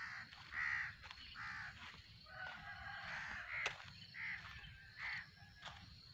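Birds calling outdoors: a series of about six short, harsh calls, roughly one every second, with a busier stretch of overlapping calls in the middle. Thin, sharp chirps come between them, over a low rumble.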